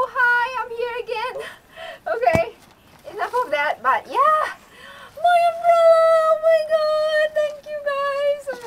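A woman's high-pitched wordless vocalizing: short excited squeals and sing-song calls, then a single note held for about three seconds near the end. A single sharp click comes about two and a half seconds in.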